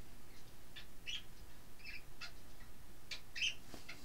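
A few short, high chirps from a small bird, scattered through the seconds, over soft rustling of linen fabric being handled.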